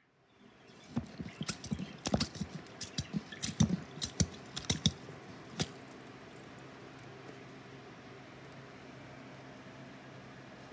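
Wooden dasher churn working cream in a crock: a run of irregular wet knocks and splashes for about five seconds, then only a faint steady hiss.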